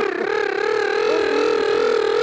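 A man's voice holding one long, high, slightly wavering shout through the public-address commentary, a drawn-out call cheering the catch.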